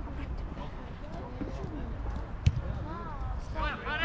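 Voices calling out across an outdoor football pitch during play, with one sharp knock, like a ball being struck, about two and a half seconds in.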